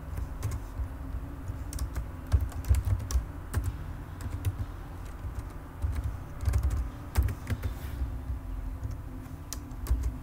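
Typing on a computer keyboard: quick runs of key clicks in two bursts, about two seconds in and again about six seconds in, with a few more keystrokes near the end, over a low steady hum.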